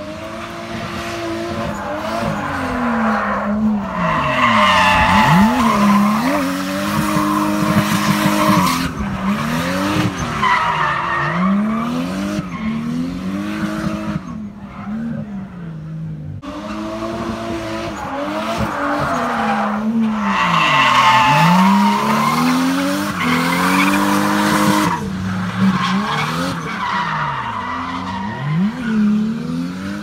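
Drift car's engine revving up and down over and over as it slides through a cone course, with tyres squealing and skidding under it. The engine note drops away briefly about halfway through, then a second run of revving and sliding begins.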